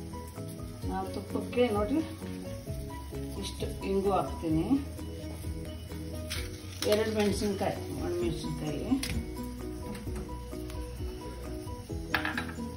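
Background music and a voice over the faint sizzle of ghee heating in an iron kadai, with a few sharp pops.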